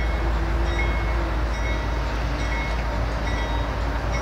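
CSX freight train led by GE diesel locomotives running, a steady low rumble with faint high tones recurring about once a second.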